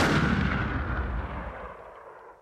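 Tail of a closing sound effect: a deep boom with a rumbling, hissing decay that fades away steadily.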